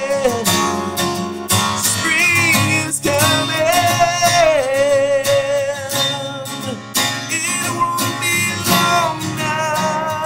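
A man singing long, wavering held notes over a strummed acoustic guitar.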